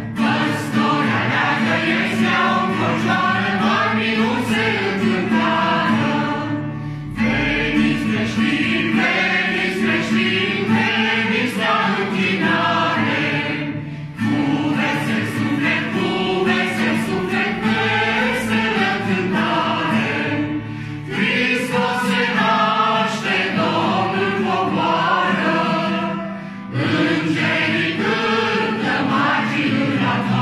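Mixed group of men and women singing a Romanian Christmas carol (colindă) to acoustic guitar accompaniment, in phrases of about seven seconds with brief breaks between them.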